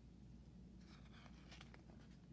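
Near silence: low room hum, with faint, brief rustling of paper in the second half, a picture book's page being handled.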